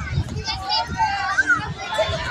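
Overlapping chatter of nearby people, children's voices among them.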